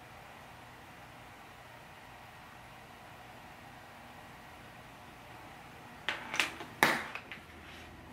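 Makeup items being handled: a few short knocks and rustles about six to seven seconds in, over faint steady room hiss.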